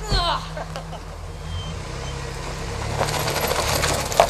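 Pickup truck engine running as the truck pulls away in snow on chained tyres. From about three seconds in, the rattle and clatter of the tyre chains on the turning wheel grows louder.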